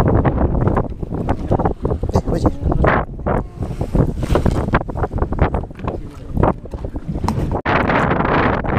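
Wind buffeting the microphone in irregular gusts on a small fishing boat at sea, a heavy low rumble throughout.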